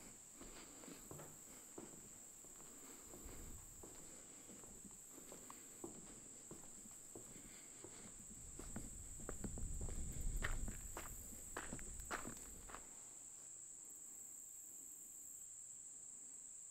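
Footsteps of a person walking, crossing old wooden bridge planks and then onto gravel, heard as a run of faint scuffs and crunches. A steady high insect drone runs underneath throughout. A low rumble swells briefly in the middle.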